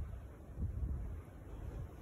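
Wind buffeting a phone's microphone outdoors: a faint, uneven low rumble.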